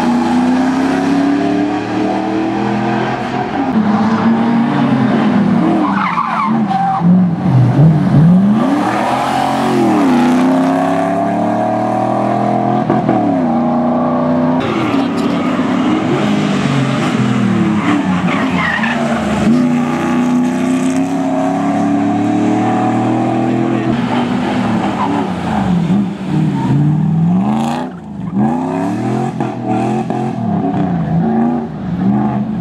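Mercedes-Benz 5-litre V8 rally car driven hard, its engine note climbing steeply and dropping back again and again as it accelerates, shifts and lifts. A few brief tyre squeals come through in the corners.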